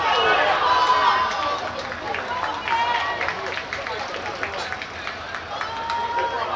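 Several young voices shouting and cheering as a goal goes in, loudest in the first second or so and then trailing off into scattered calls.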